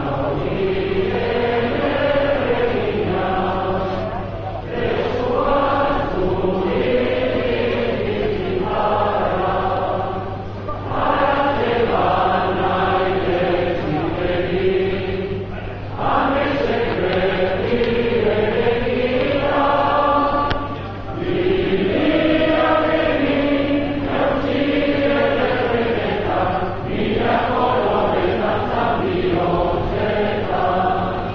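A large crowd singing a Basque song together in unison, in long held phrases with a brief breath between them every five or six seconds.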